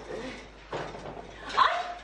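A woman's short, sharp cry of pain, "Ay!", near the end, as she burns her hand reaching into a hot oven. Faint low rustling and scraping comes before it.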